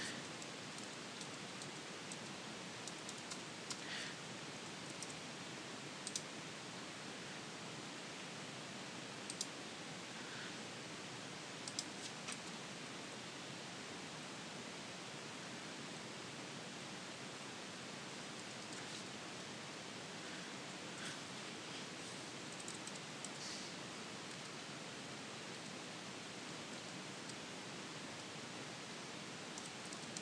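Steady low hiss with sparse, faint clicks of a computer keyboard and mouse while text is being edited.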